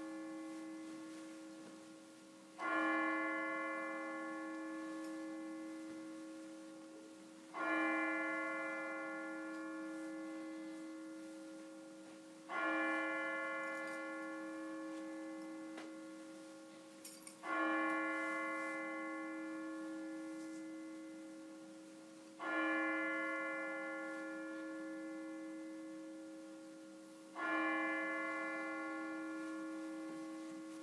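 A church bell tolling slowly, one stroke about every five seconds. Each stroke rings out and fades before the next.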